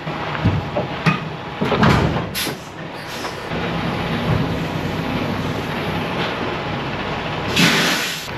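Semi-truck diesel engine running at idle, with knocks and a clunk in the first couple of seconds as the tractor's fifth wheel couples to the trailer and is tugged against it. There is a short burst of hiss near the end.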